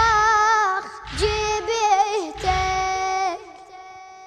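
A boy's voice chanting a Shia elegy (nai) in three wavering, drawn-out phrases about a second apart, with a low pulsing sound under each phrase. The last phrase ends about three seconds in, leaving a fainter held tone.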